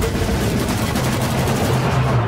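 Rapid, continuous automatic gunfire from submachine guns, with steady low tones underneath.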